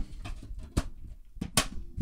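A DVD player being handled as a disc is loaded: a few short sharp plastic clicks and knocks, the loudest about three-quarters of a second and a second and a half in.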